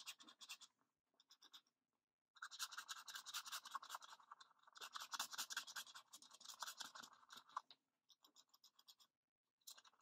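Faint, fast back-and-forth scribbling of a pen on paper as a circle on a printed chart is coloured in. A brief patch of strokes comes about a second in, then steady scribbling from about two seconds in to nearly eight seconds, and a little more near the end.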